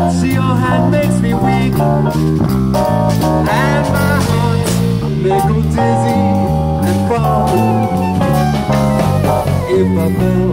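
Live jazz band playing: an electric bass walks a line note by note about twice a second under drum kit and cymbals, with a pitched melody line above.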